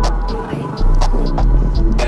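Electronic dance music: deep, loud sustained bass notes that shift pitch every second or so under pitched synth lines and sharp clicky percussion.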